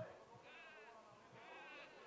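Distant voices shouting two drawn-out calls across a soccer pitch, faint, with a soft thump at the very start.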